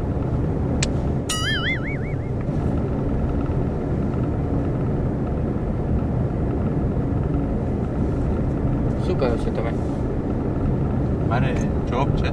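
Steady low rumble of a car's engine and road noise heard inside the cabin. About a second in, a short wavering, warbling tone rises in pitch and fades.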